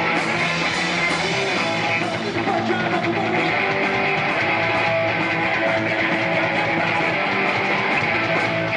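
Live punk rock band playing loud: electric guitar, electric bass and drum kit.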